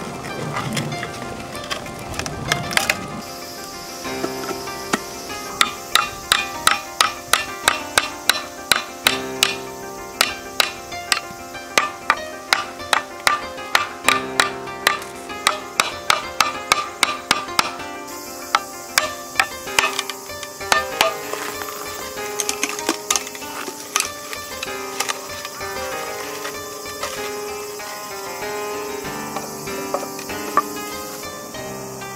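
Background music with a run of sharp knocks, about two a second, from a few seconds in until about two-thirds through: a chisel being tapped into a green bamboo culm to cut a lid from its side.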